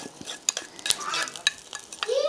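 Hot tempering of mustard seeds, red chillies and curry leaves in oil poured from a small ladle into bitter-orange curry, sizzling, with sharp crackles and clicks scattered through it.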